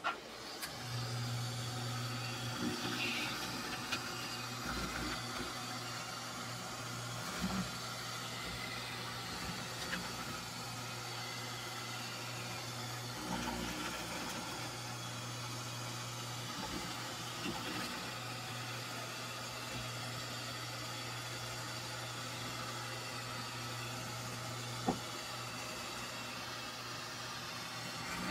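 Electric eel-skinning machine running with a steady low hum and a hiss, starting about a second in, as eel fillets are pulled across it, with a few light knocks and one sharp click near the end.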